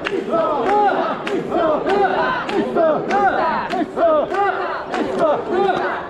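Mikoshi bearers chanting together as they carry the shrine, a short shout repeated over and over in a steady beat. Sharp clicks about every half second keep time with the chant.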